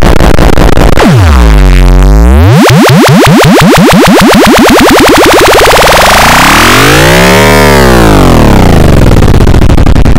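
Samsung phone startup jingle run through heavy audio effects: loud, distorted and clipped, its pitch diving steeply about a second in, climbing back up, then arching up and down again near the end.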